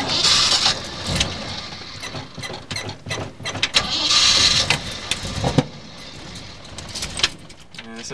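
Clicks, knocks and two short hissing bursts inside an old car's cabin as its driver works the controls to get the cold engine going. No steady running engine is heard.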